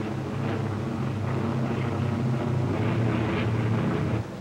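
Piston aircraft engines droning in flight, a steady low drone that swells slightly.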